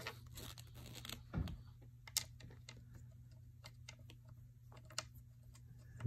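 Faint scattered clicks and light knocks from the parts of a wooden guitar stand being handled and fitted together, with a low thump about a second and a half in and a sharper click a little later, over a low steady hum.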